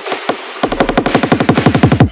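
Electronic drum roll closing a drum and bass track: rapid repeated drum hits with a falling pitch on each stroke. About half a second in they speed up to roughly sixteen a second over a deep sub-bass, building louder, then stop abruptly.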